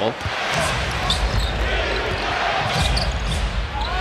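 Basketball game crowd noise: a steady arena murmur with a ball being dribbled on the hardwood court.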